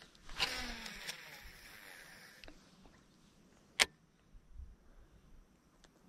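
Baitcasting reel's spool whirring as line pays out on a cast of a topwater frog lure, the whir fading away over about two seconds as the spool slows. A single sharp click follows near the middle, then a few faint ticks.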